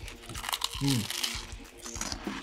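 A crackling crunch as someone bites into a crisp, puffed piece of food, lasting about a second, over background music.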